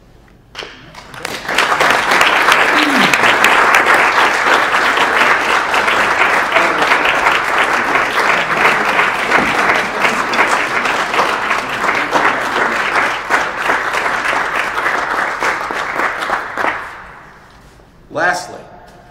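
Audience applauding, starting about a second in and dying away near the end.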